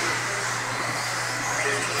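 Steady whir of several electric radio-control racing buggies running on an indoor dirt track, heard at a distance with the hall's ambience.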